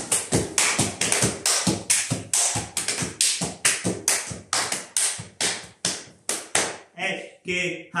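Hand slaps on the thighs and shins, hand claps and heel clicks of a Roma men's slapping dance sequence, performed without music. The sharp smacks come about three a second in an uneven dance rhythm.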